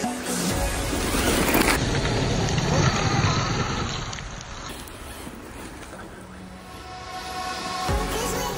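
Electronic background music over a Team Corally Shogun RC truggy driving on gravel, its tyres throwing stones. The driving noise is loudest in the first half and fades after about four seconds.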